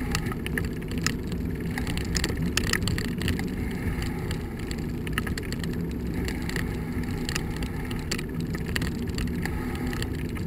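Steady wind rush on the microphone and road rumble from a bicycle rolling over cracked asphalt, with scattered small clicks and rattles.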